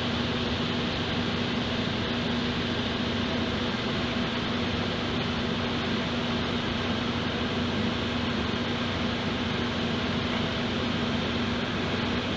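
A steady mechanical hum with hiss and one low, constant droning tone, unchanging throughout.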